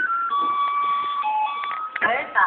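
A simple electronic melody of plain beeping notes stepping up and down in pitch, one note held for about a second in the middle, played by a small electronic melody chip.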